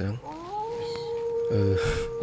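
A long wailing tone that rises in pitch over about half a second and then holds steady at one pitch, unwavering.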